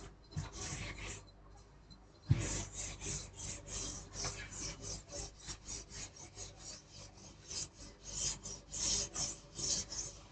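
Chalkboard duster rubbing across a chalkboard to erase chalk, in quick back-and-forth strokes at about three a second. A sharp knock about two seconds in comes just before the steady run of strokes.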